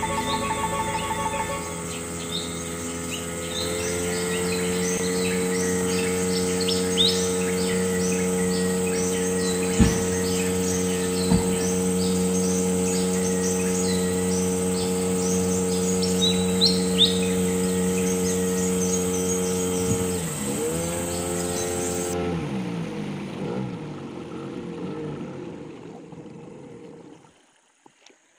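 A boat engine running at a steady pitch, then slowing down with its pitch falling about twenty seconds in as the boat comes in to a sandbank. Birds chirp over it.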